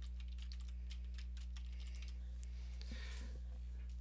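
Typing on a computer keyboard: a quick run of light key clicks as a short line of text is typed, over a steady low electrical hum.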